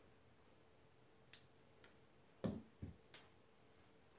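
Near-silent room with a few light clicks and two dull thuds a little past halfway, the first thud the loudest: small knocks from a person moving about and handling an object.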